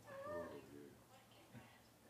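A faint, distant voice from the audience in the first second, off the microphone, with near silence after it.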